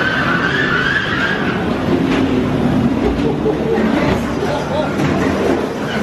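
Dark ride car rumbling and clattering along its track, with a wavering higher sound over it in the first second or so.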